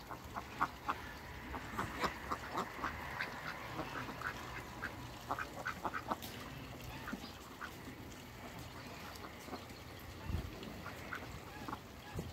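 Domestic ducks quacking in short repeated calls, thickest in the first half and sparser later.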